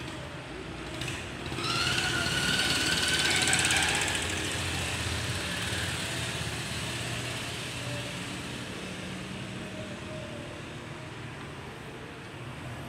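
A motor vehicle driving past: an engine whine rises over a low rumble, is loudest about three seconds in, then fades away slowly.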